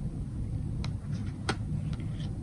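Low steady background rumble, with a couple of light clicks near the middle as a card is handled and laid down on a quilted bedspread.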